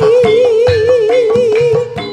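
Javanese gamelan music: a female singer holds one long note with wide, even vibrato over the struck notes of keyed gamelan instruments played with mallets.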